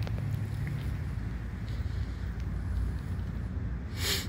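Wind buffeting the microphone outdoors: a low, uneven rumble with no distinct event.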